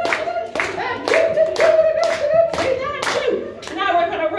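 A room of people clapping in unison, about two claps a second, under a voice singing long held notes.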